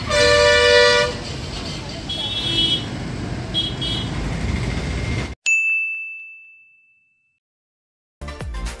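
Street traffic with a vehicle horn honking loudly for about a second, then two shorter, higher-pitched horn toots. After a sudden cut, a single bell-like ding rings out and fades away.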